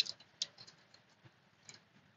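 Gerber Diesel multi-tool clicking as it is handled: one sharp metal click at the start, another about half a second in, then a few faint ticks.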